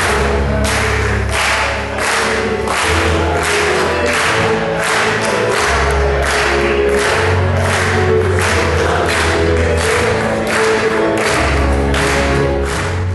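Live music: an electronic keyboard playing a bass line and chords, with a group of men singing together over a steady beat of hand claps, about two a second.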